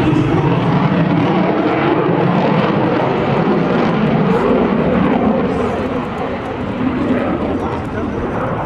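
Lockheed Martin F-22 Raptor jet fighter flying overhead, its twin F119 turbofan engines giving a loud, steady roar that eases slightly a little past the middle.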